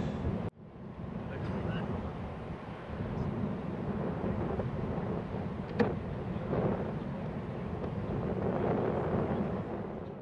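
Outdoor field recording of wind on the microphone over a steady low rumble, with one sharp click about six seconds in.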